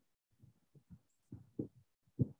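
Near silence with a few faint, short low thumps scattered through it, the loudest about a second and a half in.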